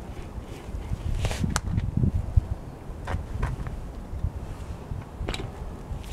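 A few sharp metallic clicks and taps as a steel crank extractor is threaded by hand into a unicycle's ISIS splined crank and a spanner is brought to it, over a low rumble.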